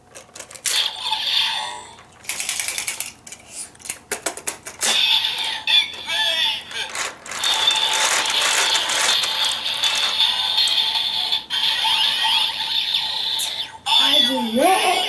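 Toy Kamen Rider Build Driver transformation belt: plastic clicking and ratcheting as it is handled and its crank lever is turned, then the belt's electronic standby music with steady high tones, which runs for the second half and cuts off just before the end.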